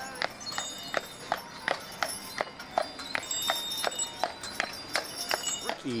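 A Clydesdale's hooves clip-clopping on pavement at a steady walk, about three strikes a second, with the jingle bells on its harness ringing.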